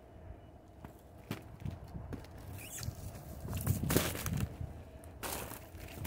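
Footsteps in snow among brush and twigs, irregular and soft, with a few louder steps a little past the middle.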